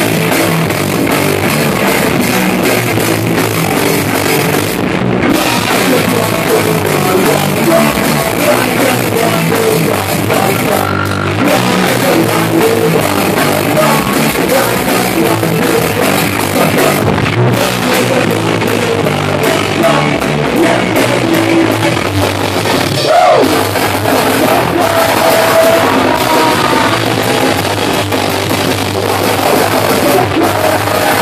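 Live punk rock band playing loud and steady: distorted electric guitar, bass guitar and a drum kit, with a singer's vocals over them.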